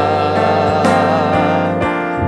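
Gospel worship song: a voice holding a wavering sung note over sustained instrumental accompaniment with a steady bass.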